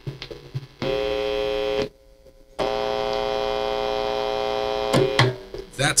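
60-cycle mains hum from the single-coil pickups of a Donner DST-1S electric guitar, amplified through its combo amp's distortion channel. It is a steady buzzing drone that switches on about a second in, cuts out for under a second around the two-second mark, comes back and stops near five seconds. The single coils pick up this hum, and heavy distortion gain brings it out; a humbucker is the recommended cure.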